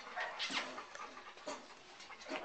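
A young puppy panting and snuffling, with a few short breathy sounds.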